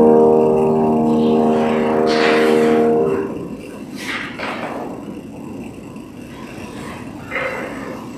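A grand piano's final chord is held ringing and cuts off about three seconds in. A quieter stretch follows, with a few soft rustles of movement.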